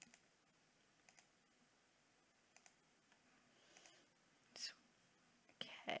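A few faint computer mouse clicks spread over several seconds against near silence, one a little louder near the end.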